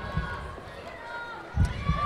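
A hushed pause in a TV studio hall: faint background voices, with a low thump just after the start and another about a second and a half in.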